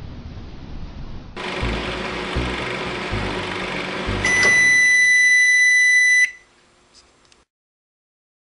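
Microwave oven running with a steady hum, then a single loud, steady electronic beep lasting about two seconds to signal it has finished, ending abruptly.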